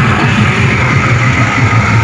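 Loud amplified music with heavy bass, played through horn loudspeakers mounted on a truck.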